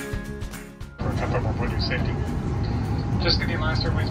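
Background music for about a second, then a sudden cut to a steady low rumble inside a jet airliner's cabin at the gate, with an announcement over the public-address system starting over it.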